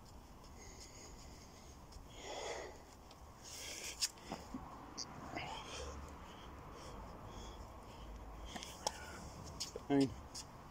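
A man breathing hard through a burpee with push-ups, with several soft knocks of hands and feet landing on the ground and a heavier thud near the end.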